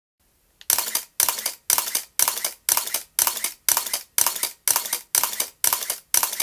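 Camera shutter firing over and over at about two frames a second, each release a short mechanical rattle of clicks, starting a little under a second in.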